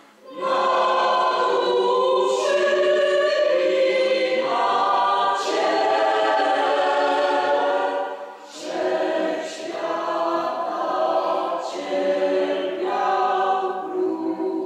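Parish choir singing slow, sustained chords. There is a short pause between phrases about eight and a half seconds in.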